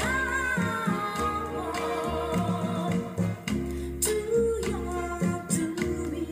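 A 45 rpm vinyl single playing on a turntable: a song with a singing voice over bass and a drum beat.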